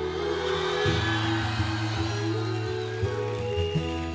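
Live pop band music between two songs: held low bass notes under a sustained chord, with no singing, as one song ends and the next begins.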